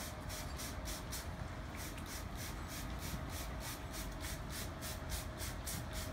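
Hand-held spray bottle squirting a gentle wash over a freshly transplanted scalp after a hair transplant: a rapid run of short hisses, about five a second, over a steady low room hum.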